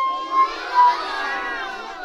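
A group of young children calling out together in chorus, answering a question put to them.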